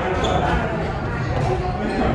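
Footsteps of a group of people climbing a wooden staircase, many overlapping thuds, with voices chattering around them in a large hall.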